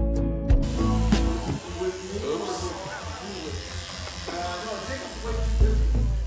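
Background music over a haircut, with electric hair clippers buzzing and indistinct voices in the middle.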